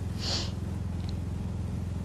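Steady low engine drone with a fast, even pulse, as from a small vehicle's engine while driving. There is a brief hiss near the start.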